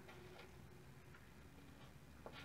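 Near silence with a few faint ticks and scratches of a pen writing on paper.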